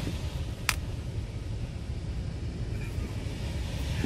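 Steady low rumble of a running rooftop package HVAC unit, heard from inside its return plenum, where return air is drawn around a large flex supply duct that fills most of the cavity. A single sharp click comes about three-quarters of a second in.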